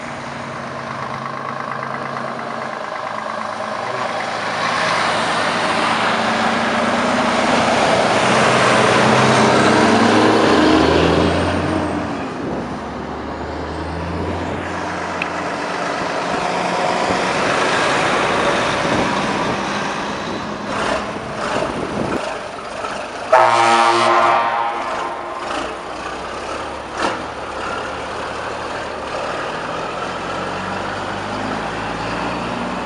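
Heavy trucks driving past one after another, diesel engines pulling away and coming closer. About two-thirds of the way through a truck horn gives a short loud blast, the loudest sound in the stretch.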